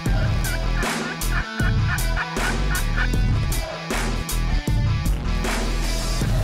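An eastern wild turkey gobbler gobbles once in the first second, a quick rattling run of notes, over electronic music with a heavy bass beat.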